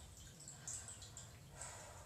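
Faint water sounds in a small tub or basin: dripping and light splashing, with a short splash about two-thirds of a second in and another near the end.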